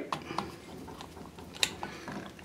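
Screwdriver turning small screws into a metal pump bearing frame: a few light metallic clicks and scrapes, the sharpest about one and a half seconds in.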